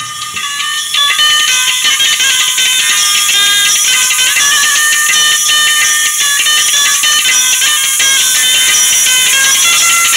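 Music played through a pair of 4-inch NEXT GEEK tweeters fed through series capacitors. Only the upper notes and treble come through, with almost nothing in the bass or lower midrange. It comes up to full volume about a second in.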